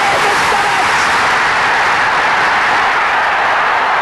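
Large stadium crowd cheering loudly and steadily as a goal goes in, heard through an old television broadcast soundtrack.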